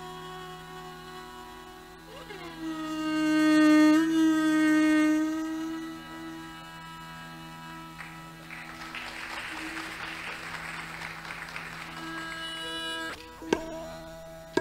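Hindustani classical violin over a steady drone: a slow bowed phrase slides up into a loud held note a few seconds in, then eases off. Near the end, sharp tabla strokes come in.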